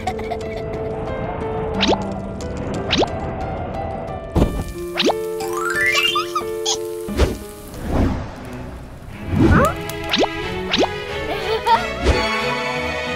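Light background music for a children's cartoon, with held notes, punctuated by a series of quick swooping cartoon sound effects and a rising run of notes about halfway through.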